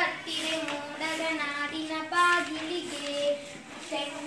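A young girl singing solo without accompaniment, holding long notes that step from pitch to pitch.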